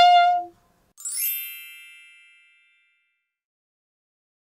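An alto saxophone's held note ends about half a second in. A second later a bright chime with a quick rising shimmer rings out and dies away over about a second and a half.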